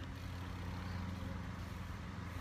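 A steady low engine hum with a few even, level tones, like a motor vehicle running.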